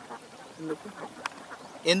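A pause in speech with a few faint, short voice sounds, then a man's voice starts loudly near the end.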